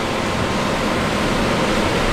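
Supercharged LT5 V8 of a C7 Corvette ZR1, fitted with a custom-grind cam and long-tube stainless headers, idling steadily under an even hiss.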